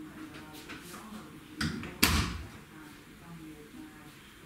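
An interior door swung shut, closing with a single sharp bang about two seconds in.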